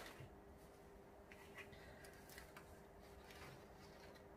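Near silence: room tone with a faint steady hum and a few faint soft ticks as seeds are pressed by hand into small pots of compost.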